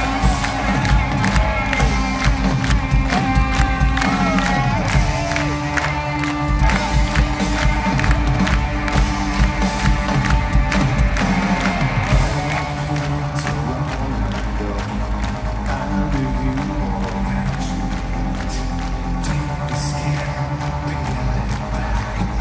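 Loud live rock music from a full band playing an instrumental passage in an arena, with the crowd cheering under it.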